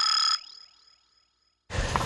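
Editing sound effect for a title card: a fast rising sweep ending in a short, bright, bell-like chime that cuts off about a third of a second in, its ringing fading over the next second. Near the end, outdoor background noise comes in after a brief gap of silence.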